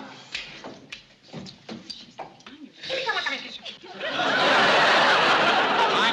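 Studio audience laughing: a few scattered chuckles, then a loud swell of crowd laughter about four seconds in.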